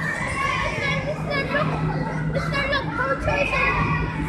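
Many children's voices shouting and calling over one another as they play, with a steady low hum underneath.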